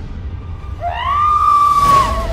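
Horror trailer sound design: a low rumble under a high wailing tone that rises about three-quarters of a second in, then holds, growing louder toward the end.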